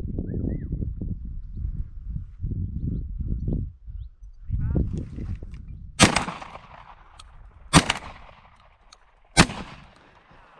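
Three shotgun shots, the first about six seconds in and the others roughly a second and a half apart, each a sharp report with a short echoing tail. Before them, low uneven rustling and handling noise as the shooter moves.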